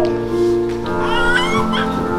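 Piano accompaniment holding sustained chords, with a high voice singing over it. About a second in, the voice slides upward through a short wavering phrase.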